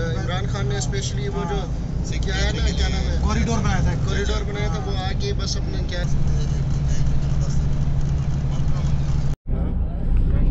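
Bus engine and road noise rumbling steadily inside the passenger cabin, with voices talking over it. A steady low hum joins in about six seconds in, and the sound drops out abruptly for a moment near the end.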